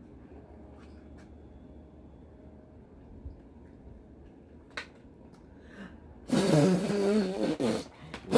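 A woman gagging with disgust at a nasty-flavoured jelly bean: one long, wavering vocal heave about six seconds in, then a second, shorter one with falling pitch right at the end.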